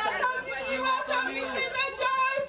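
Women's voices talking and calling out over one another, in lively chatter, with one voice through a handheld microphone.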